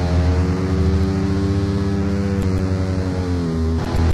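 Oi!/punk band's distorted electric guitars holding one sustained chord that rings on steadily, with a drum hit near the end.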